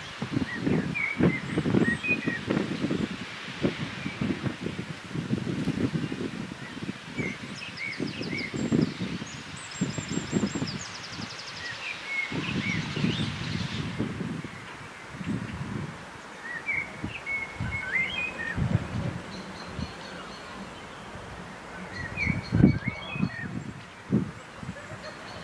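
Songbirds chirping and twittering, with short calls and a quick trill scattered throughout. Under them run irregular low rumbling thuds.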